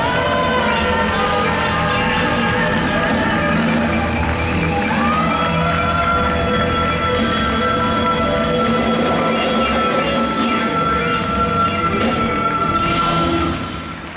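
A female singer belts a long sustained high note, held steady for about eight seconds over full band accompaniment, as the song's big final climax; the note and the band cut off just before the end.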